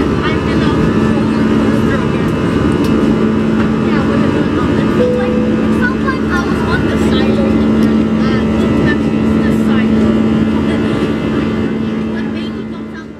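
Jet airliner's turbofan engines and rushing air heard from inside the cabin during the climb just after takeoff: a loud, steady roar with a steady hum under it.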